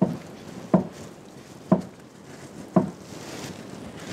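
Plastic wrap being peeled off a raw sausage log resting on a grill grate: low handling rustle, with three short soft sounds about a second apart.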